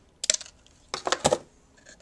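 Scissors snipping a piece off a strand of acid-core solder wire: a few sharp metallic clicks, a short group about a quarter second in and another around a second in.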